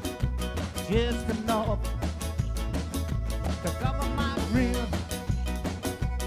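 Acoustic ska band playing live, with upright bass, acoustic guitar, congas and drum kit keeping a steady offbeat groove under a sung melody.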